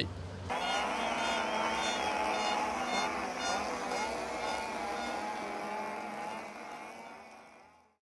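Closing sound effect added in the edit: a sustained drone with a wavering pitch that starts abruptly about half a second in and slowly fades out toward the end.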